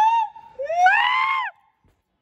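Loud, high-pitched yelling: a shout ends just after the start, then a second, longer cry rises and falls in pitch over about a second.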